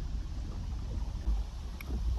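Wind buffeting the microphone on an open boat: an uneven low rumble with a few faint ticks.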